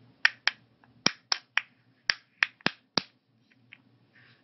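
Sharp plastic clicks from the lids of a clear weekly AM/PM pill organizer worked by fingertips and nails, about nine clicks over three seconds at an uneven pace, then two faint ones near the end.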